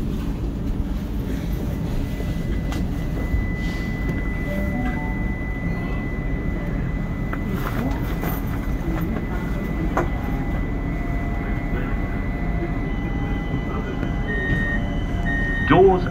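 Steady low hum inside a light rail tram standing at a stop, with a thin steady high tone over it. Near the end the door-closing warning beeps start.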